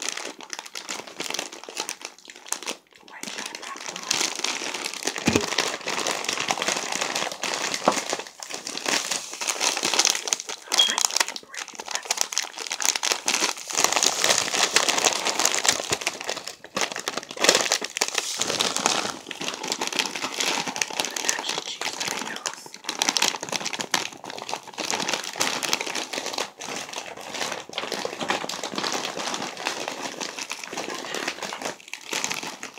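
Plastic snack bags crinkling and rattling, handled and shaken close to the microphone in a continuous crackle with short pauses.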